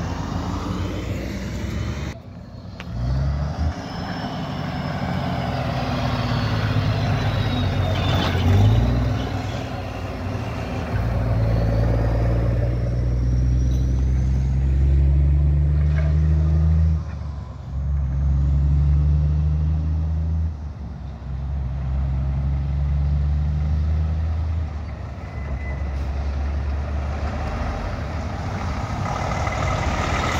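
Heavy diesel semi-truck engines on a road. One truck pulls away through several gears, its low engine note holding steady and then breaking off at each shift, about three times in the middle of the stretch.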